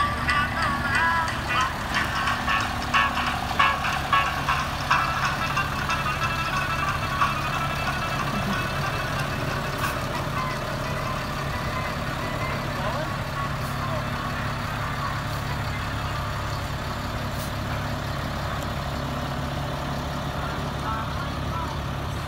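Engine of a converted school-bus ambulance running as it passes close by, a steady low hum. For the first several seconds a loudspeaker voice or music plays over it, then fades.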